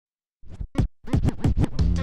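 Vinyl record scratching on a turntable: a couple of short scratches, then a quick run of back-and-forth scratches. Near the end, a beat with a steady bass note comes in.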